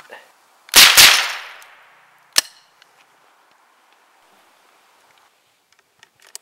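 .22 rifle firing at ceramic plates: two sharp, loud cracks about a quarter second apart just under a second in, trailing off over about a second, then one shorter, sharper crack about a second and a half later.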